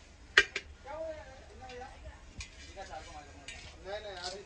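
Hammered brass pots clanking against metal as they are handled: one sharp, loud clank about half a second in with a second knock right after it, then a few lighter taps later.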